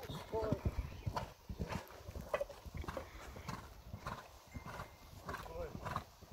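A horse's hooves thudding on a sand arena surface as it canters, a run of dull, uneven beats. A person's voice is heard briefly about half a second in and again near the end.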